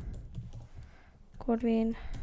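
Typing on a computer keyboard: a run of irregular keystrokes as a word is entered, with a short spoken word near the end.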